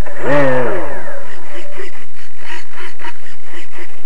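The model plane's motor winds up briefly and then spins down, its pitch falling steeply over about a second.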